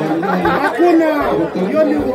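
Speech only: one voice talking continuously, amplified through a public-address loudspeaker.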